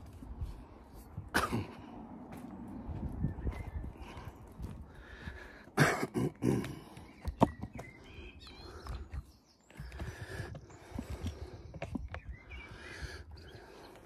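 A man coughing and clearing his throat in a few short bouts, the loudest about six seconds in, over a low rumble on the microphone.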